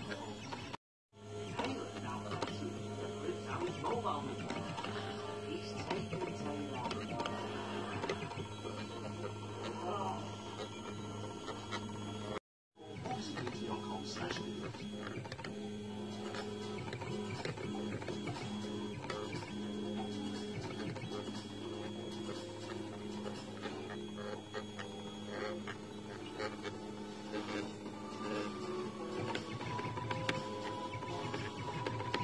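Stepper motors of an EleksMaker desktop laser engraver driving the X and Y axes, a steady hum with shifting whirring tones as the head moves back and forth. A television plays speech and music in the background, and the sound drops out completely twice, about a second in and near the middle.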